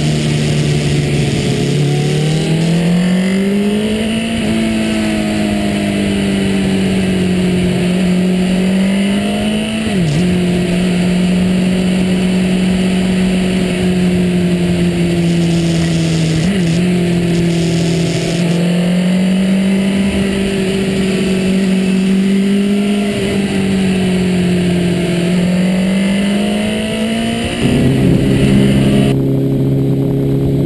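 Motorcycle engine running under way, heard from an onboard camera: its note climbs over the first few seconds, dips sharply and recovers twice, and sags slowly before changing abruptly near the end to a steadier engine note.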